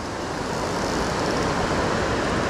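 Steady rush of water pouring over a dam spillway into the river, an even, unbroken noise.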